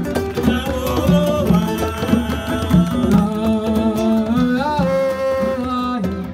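Live band music: a woman singing over acoustic guitar and a drum kit with a steady beat, holding a long note towards the end.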